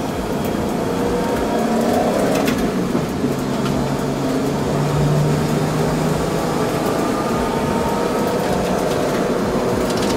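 BMW E30 325i's straight-six engine heard from inside the cabin while driven hard on track, with road and wind noise. Its pitch climbs, breaks off briefly about two and a half seconds in, holds steady, then climbs again near the end.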